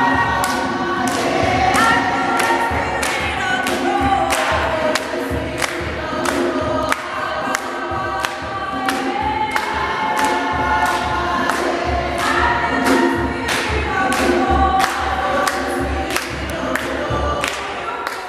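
A group of young people singing a gospel praise song together, with steady hand-clapping to the beat about twice a second.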